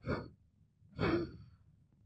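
Two short, breathy sighs from a woman, about a second apart, with no music under them.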